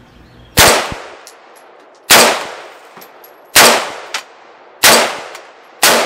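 Five shots from a CMMG Endeavor .308 semi-automatic rifle, fired about one to one and a half seconds apart, each sharp report dying away over about half a second.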